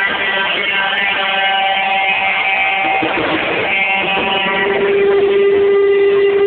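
Live band playing, electric guitar chords ringing out, with one long steady note held from about two-thirds of the way through.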